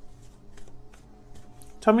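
A deck of tarot cards being shuffled: a run of soft, irregular card clicks, with a woman's voice starting near the end.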